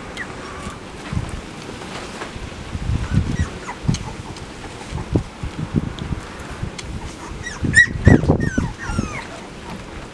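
Chocolate Labrador retriever puppies whimpering and squeaking in short high calls that bend up and down, thickest near the end. Dull low thumps run under them, loudest about eight seconds in.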